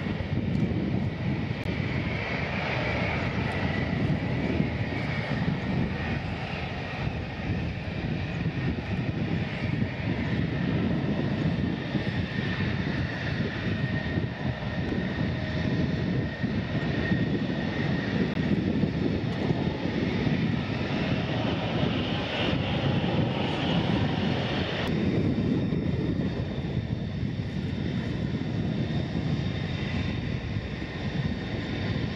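F-16 fighter jet's engine running at taxi power: a steady high whine over a low rumble. The sound shifts abruptly about five seconds before the end.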